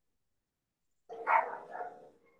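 A dog barking about a second in, two barks in quick succession.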